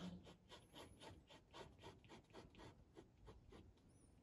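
Faint scratching of a pen drawing a line on paper, a run of short strokes.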